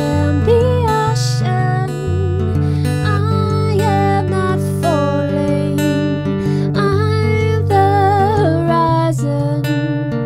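Live acoustic song: a woman singing a wavering melody over her own strummed acoustic guitar.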